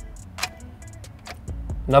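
Ignition key turned to the start position with a single click about half a second in, and no cranking from the engine. The car won't start because the swapped-in cluster is part of the turnkey immobilizer system.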